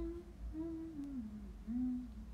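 A young woman humming with her mouth closed while chewing: a few gliding hummed notes, the middle one sliding down in pitch.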